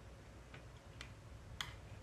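A spoon clicking against a dish as food is scooped up: a few faint, irregular clicks, the loudest about a second and a half in.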